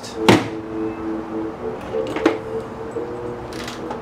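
Aluminium amplifier chassis being handled and set down on a workbench: a sharp knock a moment in and a lighter knock about two seconds later, with faint small clicks near the end.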